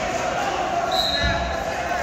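Voices of spectators and coaches echoing in a gymnasium, with one dull thump a little past a second in.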